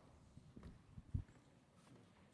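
Faint footsteps and soft knocks, with one louder low thump a little over a second in.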